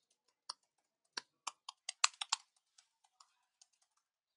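Typing on a computer keyboard: irregular keystroke clicks, with a quick run of several keys about two seconds in and a few fainter ones after.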